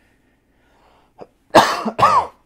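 A man coughs twice in quick succession near the end, loud and sharp, after a quiet stretch broken only by a faint click.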